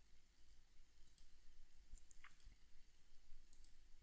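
Near silence with a few faint computer mouse clicks scattered through it.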